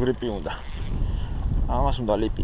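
Spinning fishing reel being worked: a brief hiss, then a short run of fast clicks from the reel's mechanism, over a low wind rumble on the microphone.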